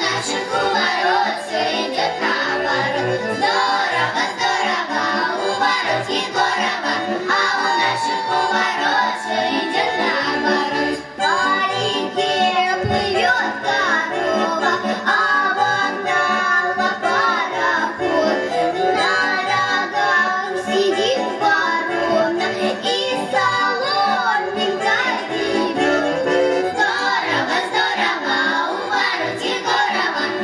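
A group of young girls singing a Russian folk song together to instrumental accompaniment, with a brief break about eleven seconds in.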